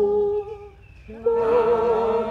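Unaccompanied hymn singing: a long held note that fades away about half a second in, a brief break, then the next phrase begins just after a second in.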